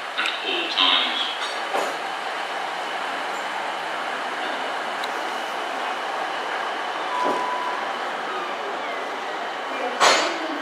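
Class 150 Sprinter diesel multiple unit running as it moves through the platform, a steady engine and wheel noise, with a brief high tone about seven seconds in.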